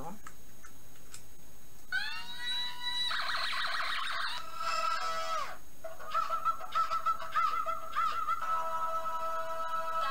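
Sound chip of a toy crystal-effect guitar playing a synthesized music clip, starting about two seconds in. Its opening notes slide in pitch, then a wavering melody follows, then steady held notes.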